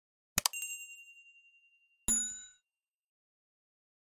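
Sound effects for a subscribe-button animation: a quick double click and a bright ding that rings out for about a second and a half, then about two seconds in a second, shorter bell-like chime.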